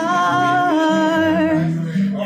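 A woman singing a long held note that steps down slightly in pitch, over a guitar backing track.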